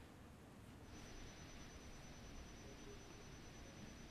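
Near silence: faint line hiss, with a thin steady high-pitched tone that comes in about a second in as the remote caller's audio feed opens.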